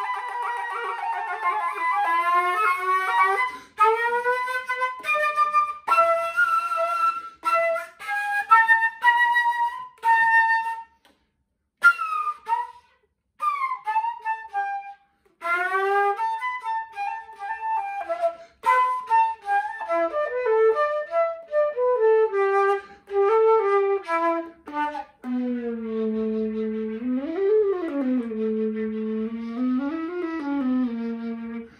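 Solo flute fitted with a glissando headjoint, playing a blues line in short phrases full of bent and sliding notes, with a couple of brief pauses about a third of the way through. Near the end it settles on a low held note that swoops up and back down, then starts to rise again.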